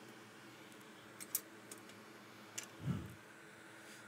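Faint steady hum of the repair bench's fans with a few light, sharp clicks between about one and two and a half seconds in, and a short low sound near three seconds.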